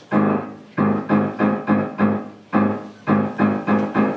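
Grand piano playing a low open chord of a note, its fifth and its octave together. The chord is struck again and again in a rhythmic pattern, each strike ringing briefly before the next.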